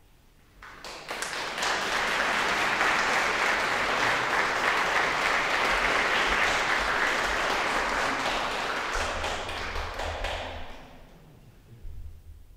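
Audience applauding in a concert hall: a few claps about a second in build quickly into full applause, which holds steady and then dies away near the end.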